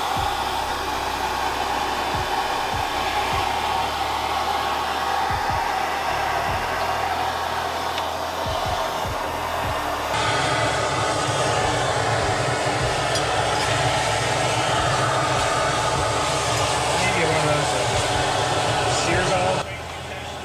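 Handheld MAP-gas torch flame running steadily while searing meat. It gets louder about halfway through and cuts off just before the end.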